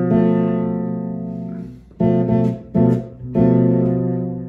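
Fretless six-string bass sounding a B half-diminished chord (B, F, A and D on top as the flat ten), the Locrian chord on B, with the notes left to ring and fade. About two seconds in the chord is plucked twice more, briefly, then struck again and left ringing.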